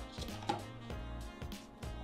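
Cardboard phone box being handled and its lid lifted off: a few light taps and scrapes of card, over quiet background music.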